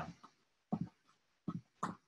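Three short grunts and breaths of effort, about three-quarters of a second, a second and a half and nearly two seconds in, from a man pressing shredded cabbage hard down into a jar to pack it for sauerkraut.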